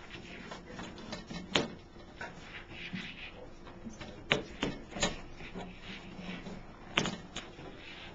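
Scattered sharp clicks and knocks from hands handling the autoclave's sheet-metal cabinet, about five in all, the clearest around the middle and a little before the end.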